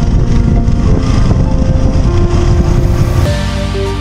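Yamaha R15 V3 motorcycle on the move: a loud, steady rumble of engine and road and wind noise with background music running under it. About three seconds in, the ride noise cuts out suddenly and the music alone carries on.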